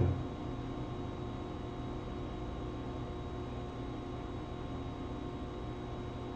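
Steady background hiss and electrical hum, with a few faint steady tones and no other events.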